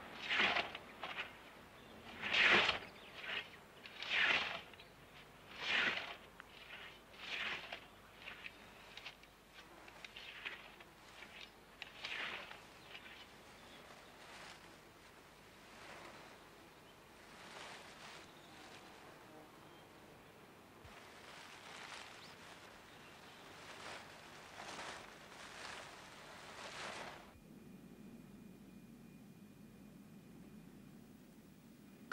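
Scythe blades swishing through dry bracken in a steady rhythm of strokes, one every second or so, loud at first and fainter after about twelve seconds. The strokes stop suddenly near the end.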